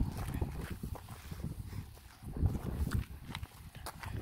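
Wind rumbling and buffeting on the microphone in uneven gusts, with a few sharp clicks and knocks near the end.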